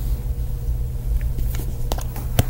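Steady low hum, with a couple of faint clicks near the end.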